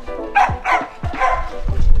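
Dogs barking in several short, sharp barks over background music.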